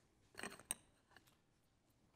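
Near silence: room tone, broken about half a second in by a short rustle that ends in one sharp click.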